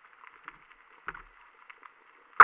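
Faint underwater crackling and ticking picked up by a submerged camera, with one sharper knock and a short low thud about a second in.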